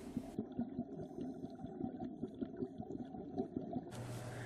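Scuba regulator exhaust bubbles heard underwater: a muffled, low, irregular crackle and rumble.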